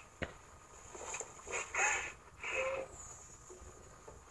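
A woman's faint sobbing and whimpering, heard through laptop speakers, in a few short cries in the middle, with a single soft click just after the start.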